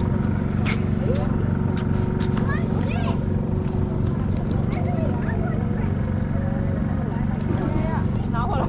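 Background talk of other people over a steady low mechanical hum, with a few sharp clicks in the first few seconds.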